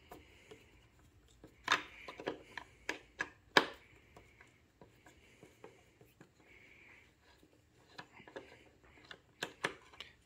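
A T30 Torx screwdriver turning the mounting screw of a motorcycle windshield to loosen it: scattered light clicks and ticks of the bit working in the screw head, with faint scraping between them and a quick run of clicks near the end.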